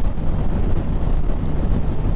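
Wind buffeting the microphone while riding a Yamaha MT-07 motorcycle at road speed, over a steady low rumble of engine and road noise.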